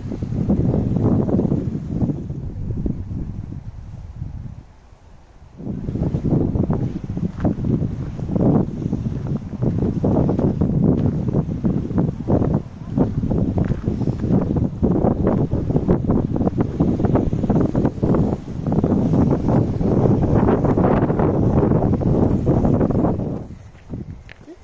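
Wind buffeting a phone's microphone in gusts: a loud, uneven low rumble that drops away briefly about five seconds in, then returns.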